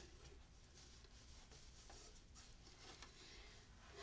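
Near silence: room tone with faint scratchy rustling as sewing thread is pulled through a quilt's cotton binding to bury the knot.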